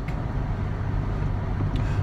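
Steady low road and engine noise inside the cabin of a moving car.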